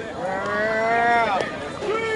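A person's long drawn-out shout, held for about a second with its pitch rising slightly and then dropping away at the end; a second long held shout starts near the end.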